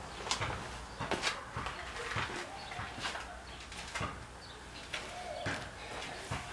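Faint scattered clicks and knocks, with a short steady tone about five and a half seconds in.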